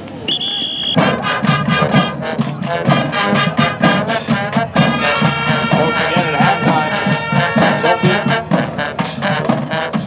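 A short high whistle blast, then a pep band plays loudly: trumpets, trombones and sousaphones over marching snare drums and cymbals, with a steady drum beat.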